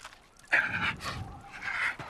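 A man panting heavily: two loud, hoarse breaths about a second apart.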